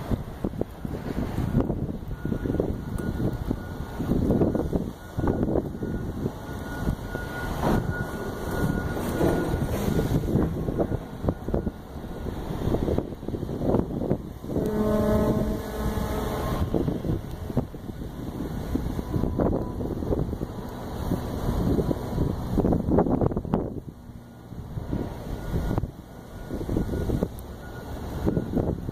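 Gusty wind buffeting the microphone, in uneven surges. Just past the middle, a horn sounds one steady note for about two seconds.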